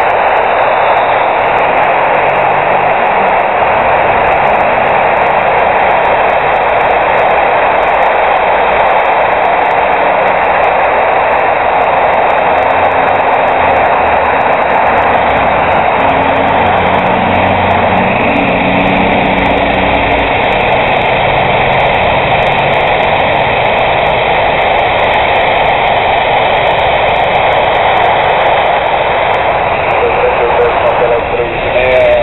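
Steady, loud static hiss from a Maycom AR-108 handheld airband radio receiver's small speaker, with no voice transmission coming through.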